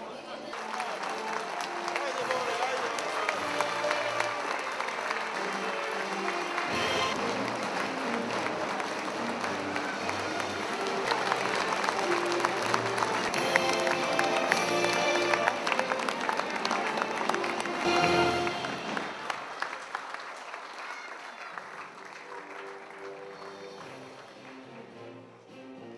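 Audience applauding in a hall over music playing. The clapping builds, is loudest shortly before it dies away about three quarters of the way through, and the music carries on more quietly.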